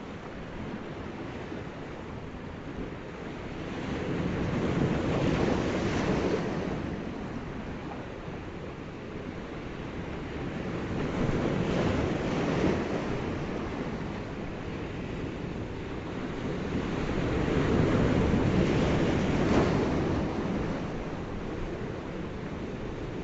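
Rushing noise of ocean surf, swelling and ebbing three times about seven seconds apart as waves wash in and draw back.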